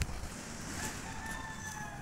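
A rooster crowing once, faintly: one long call about a second in, over low background rumble.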